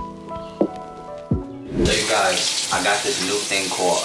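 Background music with plucked notes cuts off a little under halfway through. It gives way to a bathroom tap running into the sink, a steady hiss of water.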